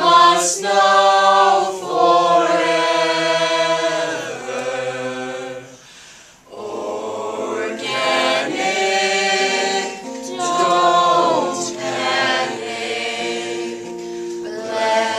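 A mixed group of young male and female voices singing together in harmony, holding long notes, with a short break about six seconds in before the singing resumes.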